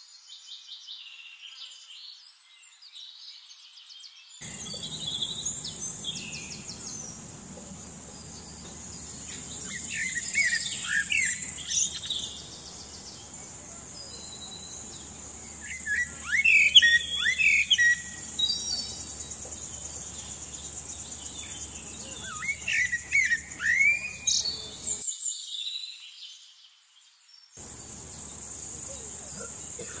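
Male Eurasian blackbird singing: phrases of fluting, warbling notes in three bursts several seconds apart, over a steady high-pitched insect drone.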